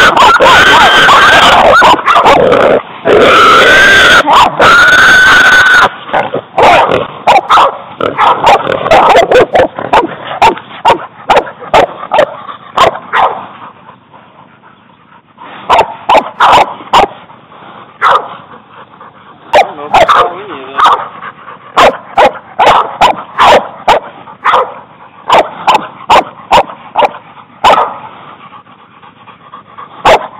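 Hog-hunting cur dogs barking and yelping. The first six seconds are loud and continuous with wavering high yelps, then short, rapid barks follow one another several times a second, with a brief lull about halfway through.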